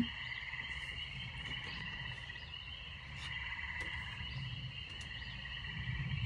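A steady chorus of calling frogs: a continuous pulsing trill in two close high pitches, with a few faint clicks.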